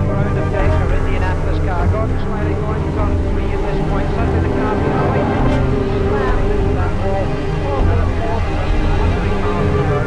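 Racing-car engine noise mixed with indistinct voices and music, at a steady loud level with no single standout crash impact.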